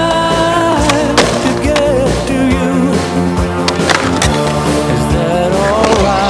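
Skateboard riding on concrete, with several sharp clacks and knocks of the board, heard over a rock song.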